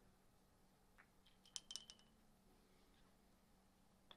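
Billiard balls on a five-pins table clicking together about a second in, then a quick clatter of several sharp clicks with a brief ringing tone as balls strike the small pins and knock them over. Faint.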